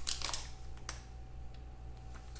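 Faint rustle of a glossy black plastic pouch being handled, with a few light clicks as a card in a hard plastic holder slides out of it, over a steady low electrical hum.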